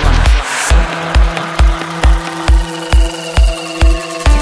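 Psytrance track with a steady four-on-the-floor kick drum at a little over two beats a second. A rising noise sweep fades out in the first second, and the rolling bassline between the kicks drops out, leaving the kick under sustained synth tones.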